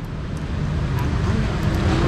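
Street traffic noise: a steady low rumble of motor vehicles, growing gradually louder as a vehicle draws near.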